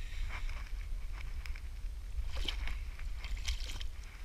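Shallow river water splashing and sloshing as a hooked carp thrashes at the surface, in irregular bursts that grow busier in the second half, over a steady low rumble.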